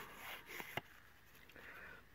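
Faint scratchy rubbing of a paper strip drawn along the edge of an ink pad, with a light click a little under a second in.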